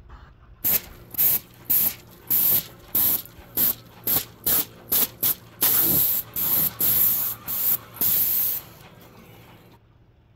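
Paint spray gun triggered in a rapid series of short hissing bursts, about fifteen, with a couple of longer sprays near the end, then stopping.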